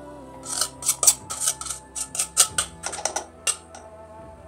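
A steel spoon scraping and tapping against a stainless steel plate and the rim of a small mixer-grinder jar, a quick, irregular run of sharp clinks and scrapes that stops about three and a half seconds in. Background music plays underneath.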